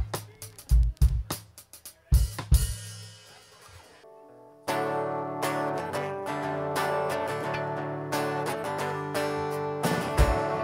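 Live band music: a drum kit hitting a few loose beats for the first couple of seconds, dying away to a short lull, then the band starting a song about halfway through with sustained guitar chords over bass and drums.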